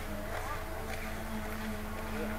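Small-town street traffic ambience: a vehicle engine running steadily, with an even low hum.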